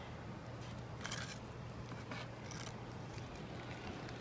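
A small trowel working thick black roofing adhesive onto a rubber membrane: a few short, faint scrapes and smears about one and two seconds in. A steady low hum runs underneath.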